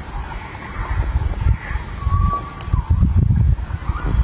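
Wind buffeting a phone microphone: an uneven low rumble that grows stronger after about a second. Beneath it lies outdoor ambience, with a faint steady high tone and a brief whistle about two seconds in.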